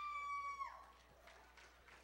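A woman's long, high-pitched cheering yell, held on one steady note, that trails off and falls about two-thirds of a second in. Faint room sound follows.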